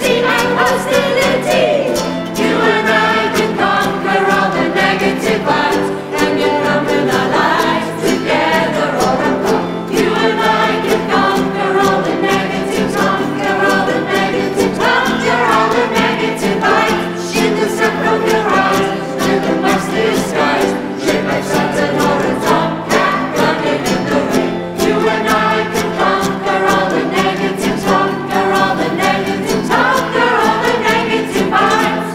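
A group of voices singing together in chorus over steadily strummed ukuleles.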